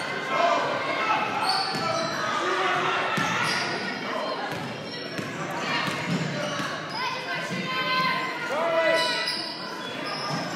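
Basketball dribbling on a hardwood gym floor, with sneakers squeaking in short gliding chirps, clearest near the end, and players' and spectators' voices echoing in the large gym.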